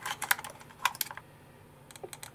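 Several light, sharp plastic clicks and taps as AA batteries are pressed into a handheld battery tester's spring-loaded slide, most of them in the first second, then a couple more near the end.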